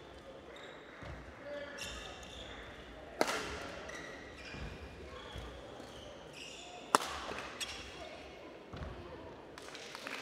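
Badminton racket strikes on a shuttlecock during a rally in a large hall, the two sharpest about three seconds and seven seconds in, with a lighter hit soon after the second. A murmur of voices runs underneath.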